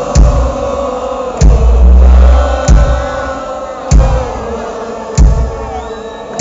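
Live rock band playing a slow beat, with a heavy bass-drum hit about every second and a quarter, under a crowd singing a long "oh, oh, oh" sing-along.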